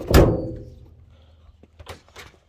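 The trunk lid of a 1969 Camaro shut with one solid thunk just after the start, dying away over about half a second. A faint click near the end.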